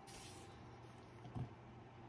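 Near silence: faint room hum and hiss, with one soft knock about one and a half seconds in as the folded metal tripod is handled.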